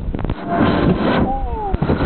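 Air rushing over the microphone and rubbing noise as a camera is whirled around on a spinning amusement ride, with a short falling cry from a rider about a second and a half in.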